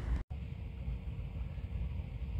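Low, steady vehicle rumble with a faint steady hum, after a brief drop-out of all sound about a quarter second in.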